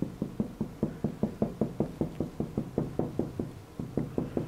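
A dry-erase marker tip tapping rapidly on a whiteboard, dabbing on leaves: an even run of quick knocks, about six a second.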